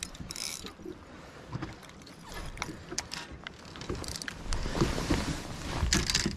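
Fishing reel being cranked, its gears giving a run of small clicks. Near the end comes a louder clatter of rods and tackle being handled on the boat deck.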